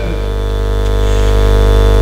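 Steady electrical mains buzz in the microphone and sound-system feed: a low hum with many evenly spaced overtones, growing slightly louder.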